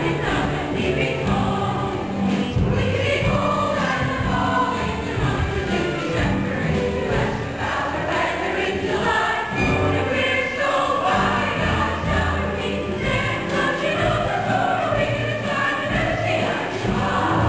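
A stage-musical ensemble cast singing a show tune together as a chorus, with instrumental accompaniment under the voices.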